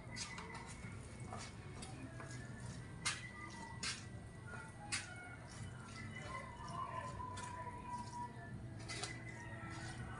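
Chopsticks stirring rice noodles in a styrofoam takeaway box, with a few sharp clicks of the sticks against the box. A steady low hum runs underneath.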